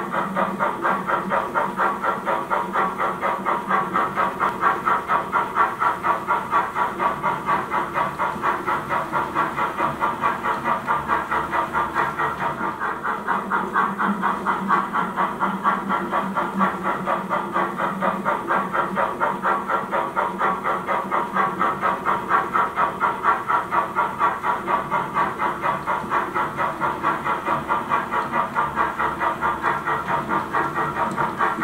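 Model steam locomotive sound from a small H0-scale tank engine: a steady, even chuffing exhaust with hiss that keeps the same quick rhythm throughout as the locomotive runs slowly with its freight train.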